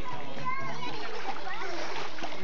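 Children splashing about in a swimming pool, with high children's voices calling out over the splashing water.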